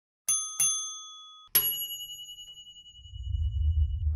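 Title-sting sound effect: two quick bell dings, then a third ding that rings on and fades, with a low rumble building near the end.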